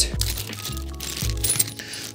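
Small metal fittings clinking lightly in the hands as they are sorted, a few sharp ticks over quiet background music.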